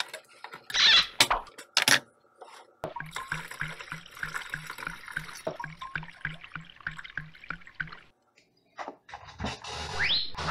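A church-key opener punches into a can of evaporated milk with a few sharp clicks. Then the milk pours from the can through a funnel into a plastic gallon jug, glugging about three times a second for some five seconds before stopping suddenly.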